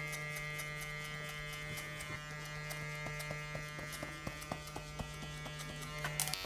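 Cordless hair clippers with a guard fitted, running with a steady hum as they are skimmed over the hair, with faint irregular ticks.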